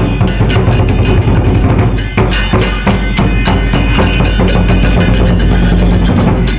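Chinese lion dance percussion: a drum beaten in a fast, continuous rhythm with cymbals clashing along, loud and close.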